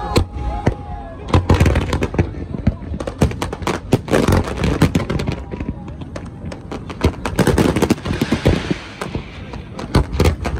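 Aerial fireworks bursting in a rapid, overlapping barrage of sharp bangs, several a second, with a stretch of hiss and crackle about eight seconds in.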